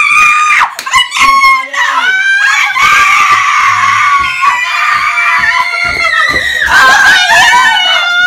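Several young people screaming with joy at an acceptance, high, loud, overlapping shrieks that burst out at once and carry on almost without a break.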